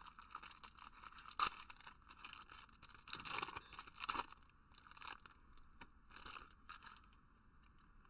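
Foil trading-card booster pack wrapper being torn open and crinkled by hand, in a run of irregular crackles, the sharpest about a second and a half in.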